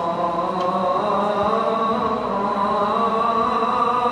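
A man's solo Islamic chant in Arabic, sung into a microphone: one long drawn-out phrase whose pitch wavers up and down without a break.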